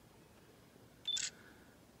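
Quiet background with one short high beep about a second in, followed at once by a brief hiss.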